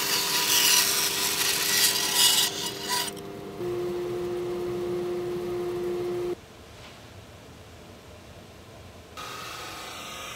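Bandsaw cutting through wood for about three seconds, a loud hissing cut over the steady hum of the running saw. After that the saw hums on its own, then the sound drops off abruptly. Near the end a different steady machine hum starts.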